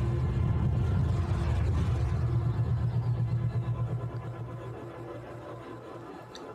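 Sound effect of a Sith starship's engine: a deep, steady drone that fades away over the last few seconds.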